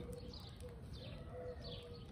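A bird calling in the background: a short falling chirp repeated several times, with a short low steady tone breaking in and out.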